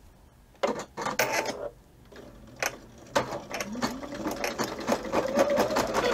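Computerised embroidery machine starting its first stitch-out. After a few knocks about a second in, the needle clatters in a fast, even rhythm while the motor's hum rises in pitch and settles into a steady tone as it comes up to speed.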